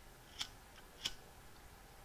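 Handheld paper tag punch working on thin printed cardstock: two short sharp clicks about two-thirds of a second apart, with a fainter tick between them.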